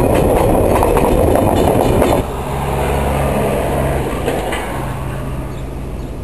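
Loaded container wagons rolling past close by, a dense rumble of wheels on the rails that stops abruptly about two seconds in. A quieter, steady low diesel drone from the DSG shunting locomotive follows.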